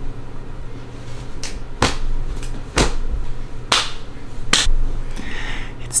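About five sharp snaps, spaced unevenly over roughly three seconds, over a low steady hum.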